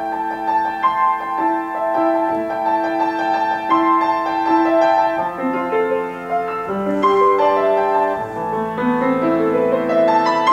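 Grand piano being played: a melody of struck notes over sustained, overlapping chords, at an even moderate loudness.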